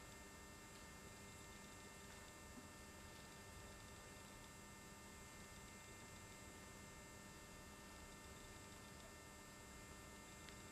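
Near silence: only a faint, steady electrical hum and hiss from the recording.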